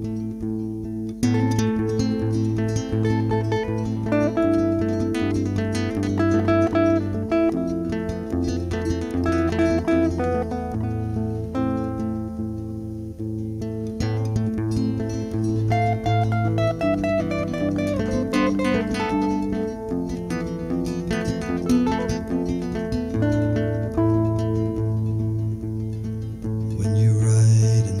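Acoustic guitar playing an instrumental break, picked melody notes over a repeating low bass note.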